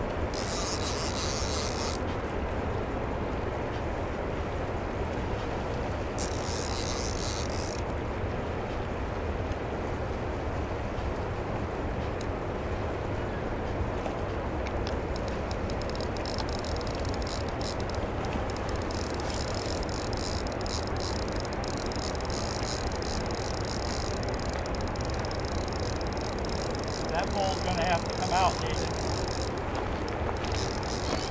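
Steady rushing of churning water below a dam, with a heavy fishing reel's drag buzzing in two short spells, near the start and again about six seconds in, as a hooked sturgeon takes line. Dense, fast reel clicking runs through the second half, and a faint voice comes near the end.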